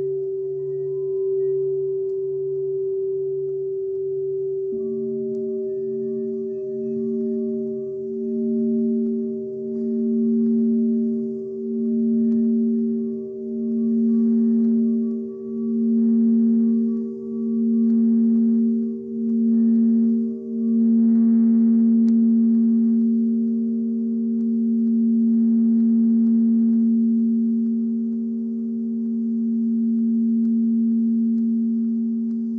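Singing bowls ringing together in long, sustained tones. One bowl holds a steady tone throughout, while a second tone comes in about five seconds in, wavering in a slow pulse about once a second, and settles into a steady hum about two-thirds of the way through.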